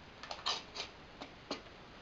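Two cut halves of a thin aluminium soda can being pushed together by hand, giving a handful of faint, light clicks and crinkles as the metal walls slide into a snug fit.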